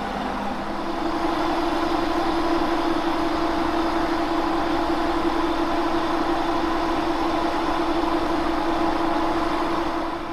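Monarch engine lathe running with a turning tool taking a cut on a spinning 1045 steel roller. About a second in the cut deepens and a strong steady tone rises over the machine's hum, holding to near the end.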